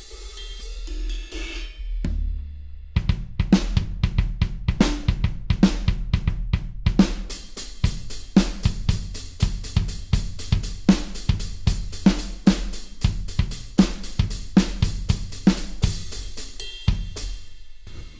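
Virtual drum kit samples from Addictive Drums 2 triggered from a MIDI keyboard: scattered single drum and cymbal hits at first, then from about three seconds in a fast, dense run of hi-hat and cymbal strikes over kick and snare hits, stopping shortly before the end.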